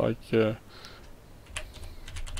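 Typing on a computer keyboard: a quick run of key clicks beginning about one and a half seconds in.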